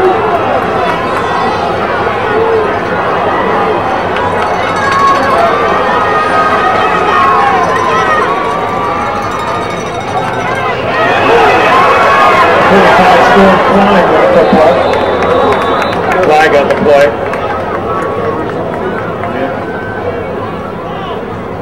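Football stadium crowd: many voices talking and shouting throughout, swelling into louder cheering for about six seconds past the middle as a play runs, with a brief high whistle in the loudest part.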